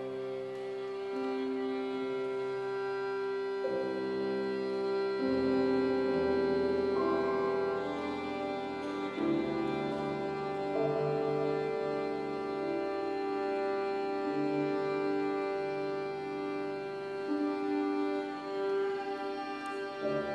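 Violin and piano playing slow contemporary chamber music: long held, overlapping tones that change every few seconds.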